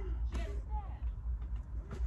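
A low steady rumble in a closed car trunk, with a faint murmur of voice about half a second in.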